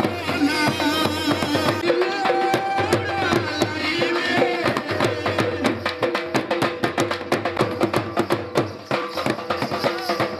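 Dhol drums beaten in a fast, dense rhythm, with a wind instrument playing a wavering, ornamented melody over them, live folk dance music. The melody stands out most in the first half, and the drum strokes carry on thick and steady to the end.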